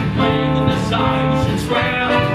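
Live musical theatre pit band playing a stage number, with held notes over a moving bass line.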